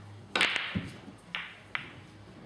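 Pool shot into a cluster of balls: one loud, sharp crack as the cue ball strikes the pack, then a duller knock and two lighter clicks as the balls scatter and hit each other.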